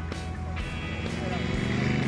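Modified Ford 100E's engine running low and steady as the car creeps forward, growing slightly louder, with background music over it.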